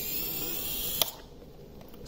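Brushless motors of a prop-less 3450 KV 5-inch FPV quad running on a 3S battery with a faint whine and only slight jitter, which the owner puts down to the P gains being a little high. A sharp click about a second in, after which the motors stop.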